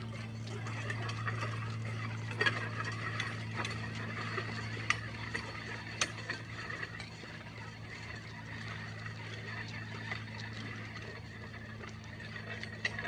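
Weight sled loaded with about 460 lb of plates scraping and rattling over asphalt as it is pushed uphill, with occasional sharp clanks. It grows fainter as it moves away, over a steady low hum.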